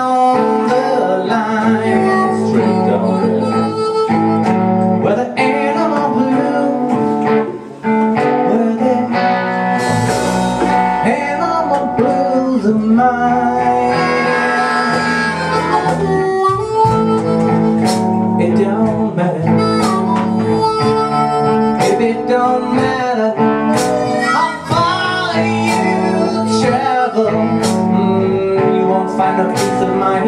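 Live blues band playing: blues harmonica and electric guitar over a cajon beat. Deep bass guitar notes come in about ten seconds in.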